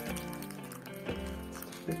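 Background music with held notes that change every half second or so.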